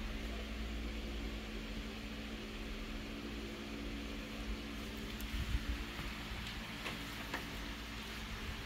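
Photocopier running idle with a steady fan hum, and a few light clicks and taps about five to seven seconds in as a puzzle piece is handled on the glass.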